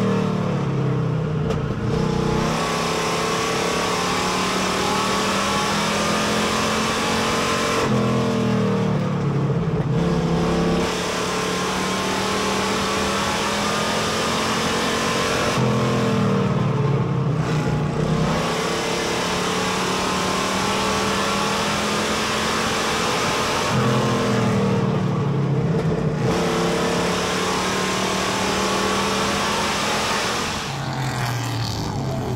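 Street stock race car engine heard from inside the cockpit at racing speed. The pitch drops as the driver lifts into each turn and climbs again back on the throttle, about every eight seconds.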